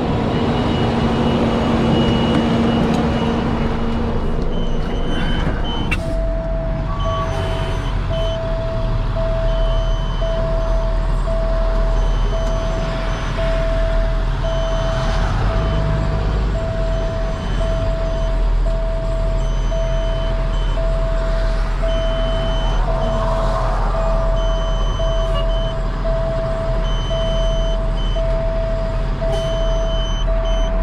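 A tow truck's diesel engine idling with a steady low rumble. About six seconds in, an electronic warning beep starts and repeats evenly, about three beeps every two seconds.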